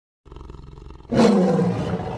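Monster roar sound effect: a low rumbling growl starting a quarter second in, swelling into a loud roar just after a second.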